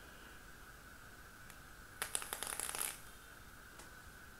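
Vape coil in a dripper atomizer on a Lost Vape Ursa Quest mod, fired in the mod's hard mode: a quick run of crackles lasting about a second as the wetted wick and e-liquid heat on the coil.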